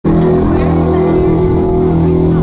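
Live rock band playing loud, with electric keyboard and drums: a sustained chord held steady throughout.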